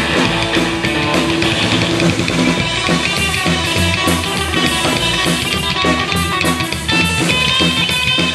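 Live rockabilly band playing an instrumental passage with no singing: electric guitar over upright bass and a drum kit.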